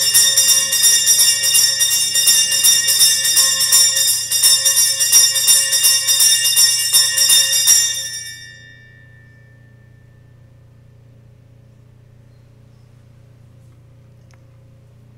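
Altar bells shaken in a rapid continuous ringing of many bright tones, the signal for the elevation of the consecrated host at Mass. The ringing stops about eight seconds in and dies away, leaving a faint steady low hum.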